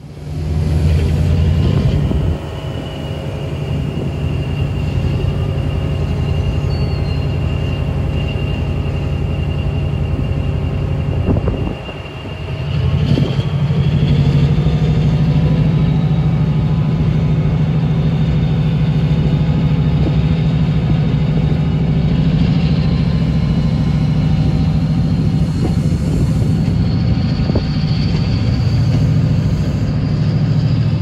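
Chiltern Railways Class 68 diesel locomotive's V16 engine working hard as it hauls its coaches away, a deep steady engine note with a thin high whine. The engine eases off briefly about halfway through, then comes back louder, and the whine rises in pitch near the end as the train gathers speed.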